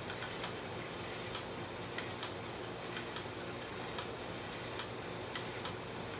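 Scotch-tension spinning wheel running as it is treadled, putting twist into the leader and fibre: faint ticks about once a second over a steady hiss.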